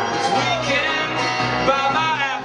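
Live bluegrass-style acoustic band music: a male voice singing over strummed acoustic guitar and banjo.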